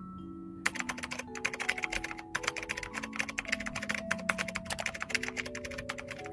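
Rapid computer-keyboard typing: a dense run of key clicks starting just under a second in and stopping just before the end. It plays over soft mallet-instrument background music.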